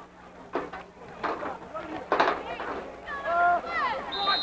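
Indistinct voices talking and calling out in short snatches, over a faint steady hum that stops near the end.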